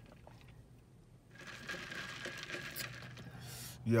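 Rustling, crinkling noise that starts about a second and a half in and lasts about two seconds. Near the end a man says a short "Yo".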